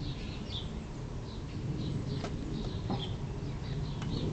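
Faint, short, high bird chirps, a dozen or so scattered irregularly, over a steady low rumble, with a couple of soft clicks past the middle.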